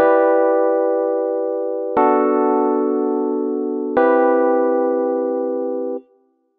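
Logic Pro's Classic Electric Piano software instrument playing a three-chord progression in E minor, one sustained chord every two seconds, each fading until the next, stopping suddenly at the end.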